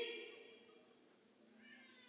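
A man's amplified voice trailing off on a drawn-out final vowel, fading away into near silence. A faint low voiced sound starts near the end as he begins his next words.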